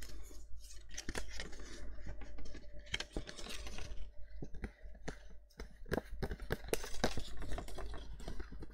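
Stiff cardstock handled by hand: irregular small clicks, taps and rustles as taped card pieces are pressed, flexed and slid against each other.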